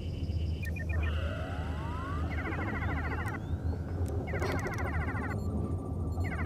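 Science-fiction electronic sound effects of a dead ship's systems being powered up: a rising electronic whine, then three bursts of rapid warbling electronic beeps, over a steady low hum.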